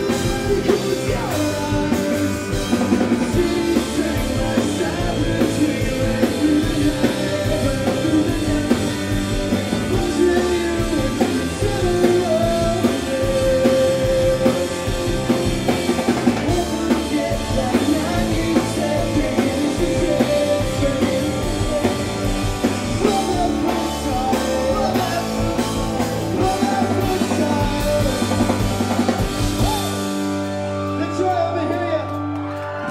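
Live rock band playing: electric guitars, bass and drum kit with a keyboard, and a male lead vocal singing over the top.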